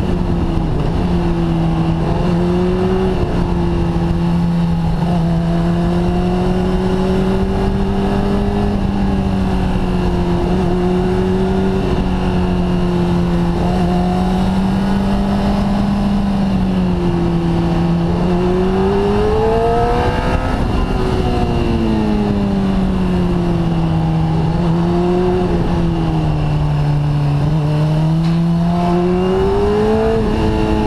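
Motorcycle engine running under changing throttle on a winding road, its pitch rising and falling through the bends, with the highest climbs about two-thirds of the way through and again near the end. A steady rushing noise runs underneath.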